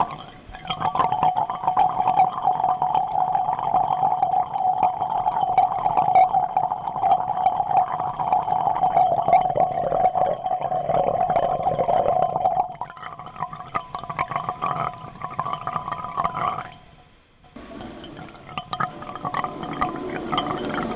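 Live electronic noise performance: a dense crackling texture over a steady mid-pitched drone. About two-thirds through it thins out, cuts out almost entirely for a moment near the end, then returns.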